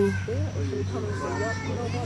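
Background chatter of several people, children's voices among them, quieter than the main speaker, over a steady low hum.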